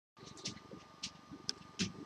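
Faint rustles and small clicks from a handheld webcam being moved, over a faint steady tone.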